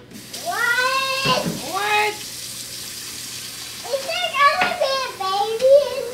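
A toddler's high-pitched wordless calls, several of them, rising and falling, over a kitchen tap running into the sink. The tap comes on just after the start.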